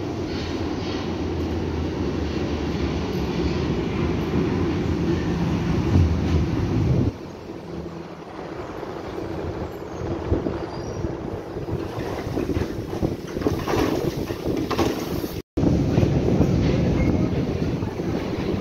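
Berlin U-Bahn train running into an underground station, with a loud steady rumble for about seven seconds that breaks off abruptly. It is followed by the quieter sound of the train standing at the platform, then a brief dropout and a louder stretch near the end.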